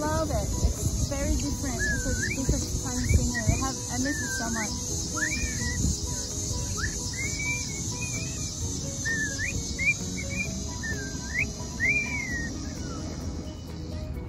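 Pet cockatiel whistling: a string of short whistles, each sliding up or down in pitch, about one a second, over a steady high insect drone.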